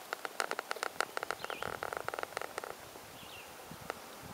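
Fishing reel being cranked: a quick, uneven run of clicks for about two and a half seconds, joined by a steady whir in its second half, then stopping.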